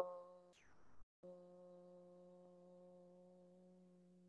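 The tail of a chanted Om: after the loud part ends, the voice carries on as a faint, steady hum on the same pitch that slowly fades. Around half a second in there is a thin falling electronic sweep, and just after a second a brief complete dropout, like video-call audio processing.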